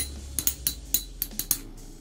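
Metal Fight Beyblade spinning tops in a plastic stadium, their metal wheels knocking together in quick, irregular clinks over a low, steady hum that fades near the end.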